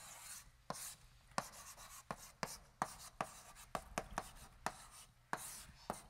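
Chalk writing on a blackboard: about a dozen sharp, irregularly spaced taps as the chalk strikes the board, with faint scratchy strokes between them.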